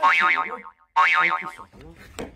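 A comic sound effect: a wobbling, springy tone heard twice, about a second apart, each one starting suddenly and dying away within under a second.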